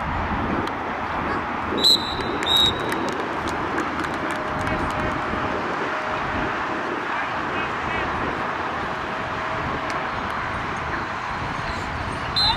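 A referee's whistle, two short, shrill blasts about two seconds in, typical of a play being whistled dead. Voices from the sidelines carry on under it.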